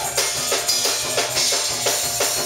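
Live church praise music driven by a drum kit playing a fast, steady beat, about four strokes a second.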